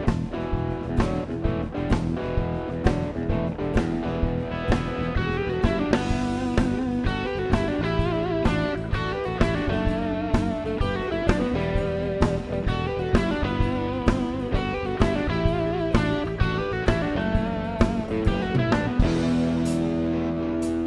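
Rock band playing an instrumental passage live: electric guitar lines over bass and a steady drum beat. The drums drop out near the end, leaving held notes ringing.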